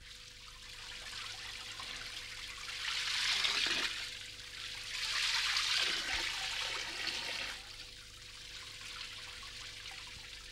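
Water spraying from a garden hose onto leafy shrubs: a steady hiss of spray that swells louder twice, about three seconds in and again around five to seven seconds in.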